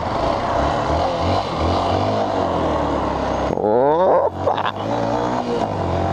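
A Yamaha Factor 150's single-cylinder engine running under way with steady wind noise. It revs up sharply a little past halfway through.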